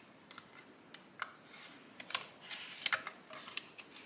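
Paper banknotes and a paper cash envelope rustling softly as bills are tucked into the envelope, with a few light ticks and clicks of handling.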